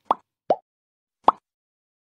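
Three short cartoon pop sound effects: two close together near the start and a third a little past the middle, as the animated subscribe end screen pops into view.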